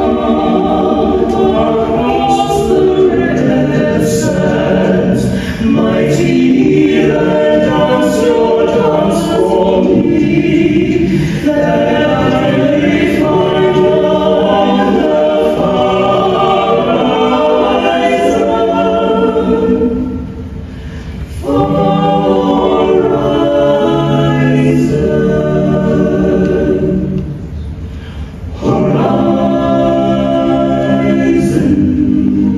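Mixed choir of men's and women's voices singing in harmony under a conductor, holding long chords, with two short breaks between phrases, about twenty seconds in and again near the end.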